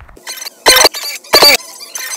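Chopped snatches of a song's audio played back in short bursts as a phone video-editor timeline is scrubbed: two loud bursts, each a fraction of a second, about two-thirds of a second apart, with fainter fragments between.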